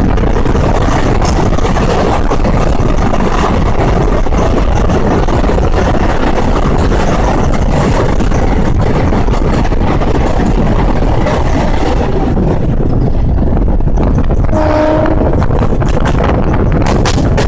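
Express train running at speed through a tunnel, heard from the coach doorway: a loud, steady rumble of wheels on rail and rushing air. The hiss thins out as the train leaves the tunnel, and a brief pitched tone sounds near the end.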